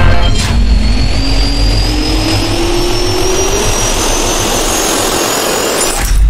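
Jet engine spool-up sound effect: a turbine whine rising steadily in pitch over a loud rushing roar and low rumble.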